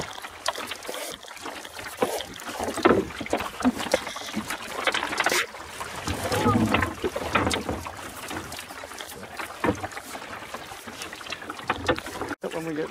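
Small wooden Mallard sailing dinghy under way in a chop: water slapping and splashing against the hull, with irregular knocks and rustles from the boat and its gear.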